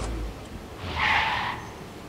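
Vehicle sound effect: a low rumble at the start, then a short tyre screech about a second in, as of a vehicle skidding to a stop.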